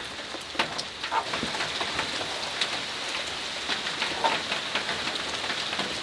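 Rain falling on a metal roof: a steady patter with scattered louder drops ticking through it.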